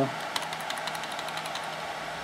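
Steady hum of running computer hardware, with a few faint clicks from keyboard keys as the arrow key steps through a file list.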